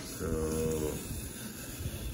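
A man's voice drawing out a long "So" in the first second, over low rumbling handling noise from hands holding a plastic model hull.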